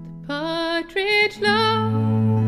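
A woman singing a folk ballad in a clear voice with a wavering held note, entering just after the start. A low, steady drone comes in about halfway through.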